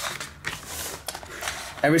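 Sheet of paper shipping labels sliding and rustling against its cardboard box as it is pulled out, with a few light clicks.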